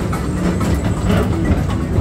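Tomorrowland Transit Authority PeopleMover ride car rolling along its elevated track: a steady low rumble with light clicks about twice a second.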